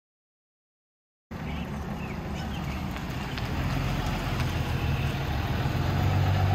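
Pickup truck's Cummins turbo-diesel engine running as the truck drives by, a steady low drone that cuts in about a second in and slowly grows louder.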